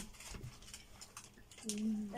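A quiet stretch with a few faint, soft clicks, then a woman's voice starts speaking near the end.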